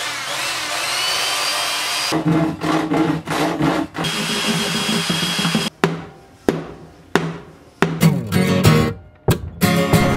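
Corded electric drill whirring and rising in pitch as it spins up, running again a few seconds later, followed by a run of irregular sharp knocks and scrapes from hand tools working on an acoustic guitar body, over background music.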